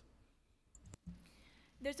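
Quiet pause with a single sharp click about a second in, then speech begins near the end.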